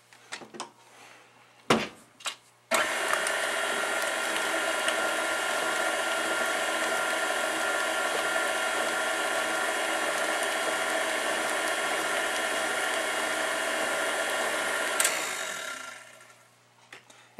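KitchenAid tilt-head stand mixer beating cheesecake batter of cream cheese, sugar and eggs: a couple of knocks as the head is lowered, then the motor starts abruptly about three seconds in and runs with a steady whine. It is switched off shortly before the end and winds down.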